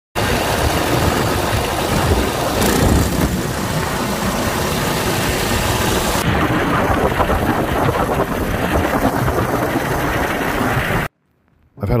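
A railcart running along rail track on its polyurethane-tread wheels, with engine and rolling noise. The sound is loud and steady, turns duller about six seconds in, and cuts off suddenly near the end.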